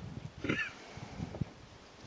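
A single short bleat-like animal call about half a second in, over an irregular low rumble.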